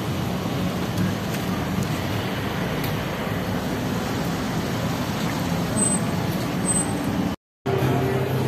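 Steady city street traffic noise: cars running and passing close by on the road. It cuts out briefly near the end.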